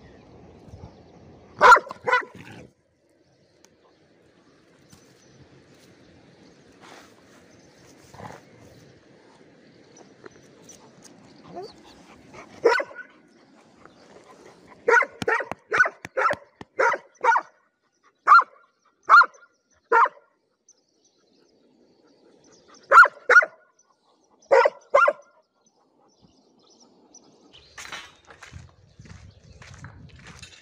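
A dog barking in short barks: a pair early, then a quick run of about nine barks, roughly two a second, and two more pairs later.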